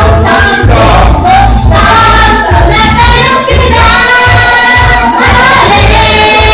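Group of singers with microphones singing together in harmony, several voices at once, over a strong pulsing bass line. The sound is loud throughout.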